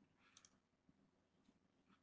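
Near silence, with a couple of faint computer-mouse clicks about half a second in.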